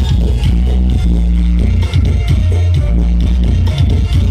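Very loud music played through a large outdoor sound system, dominated by a deep, sustained bass line under a steady beat.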